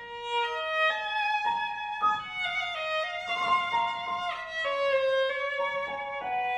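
Violin playing a slow, singing melody of held notes with piano accompaniment, a new phrase starting just as a quiet pause ends. One note slides quickly upward about four seconds in.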